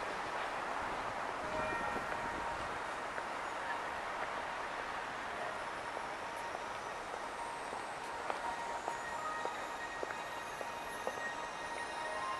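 Steady outdoor city hubbub, with faint short high tones now and then and a few light clicks.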